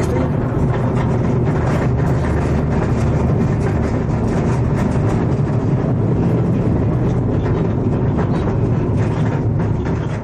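Mine locomotive hauling a man-riding car along the rails through a mine tunnel: a steady low rumble with a running rattle of wheels and car body.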